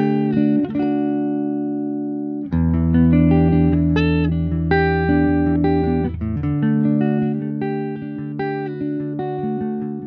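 Gibson Les Paul electric guitar on its neck pickup playing ringing chords through a Hilton Pro Guitar volume pedal, with a fresh chord struck about two and a half seconds in. Over the last several seconds the pedal gradually backs the volume down, and the tone keeps its highs as it fades.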